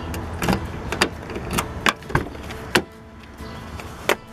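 A key in a car's driver-door lock and the door's handle and latch being worked: about six sharp metallic clicks and clunks over three seconds as the lock turns and the door comes open.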